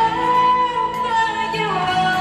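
A woman singing into a handheld microphone, holding one long high note that drops lower near the end.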